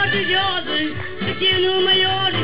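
Live accordion band playing Azorean folk-style music, with a man singing a melody into a microphone over held accordion bass notes and drums.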